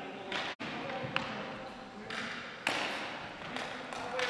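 Ball hockey play on a gymnasium's hardwood floor: sticks clacking and the ball striking the floor, with players' voices echoing in the hall. A sharp click comes about a second in, and the sound gets louder shortly before three seconds in.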